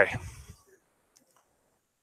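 The end of a man's spoken word, fading out in the first half second, then a quiet room with a few faint clicks.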